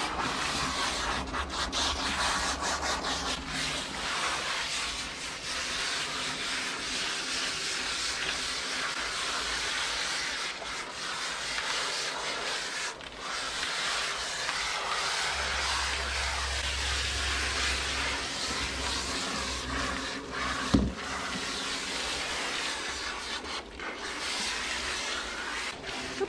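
Water hissing steadily from a hand-held hose spray nozzle onto a large dog's soapy coat and the tiled shower floor, with a single knock about three quarters of the way through.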